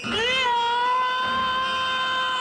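A reanimated corpse's long scream in a horror film. It rises over the first half-second, then holds on one steady pitch.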